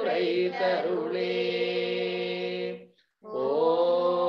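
A voice chanting a devotional mantra in long held notes, heard over a video call; the chant breaks off briefly about three seconds in, then the next held phrase begins.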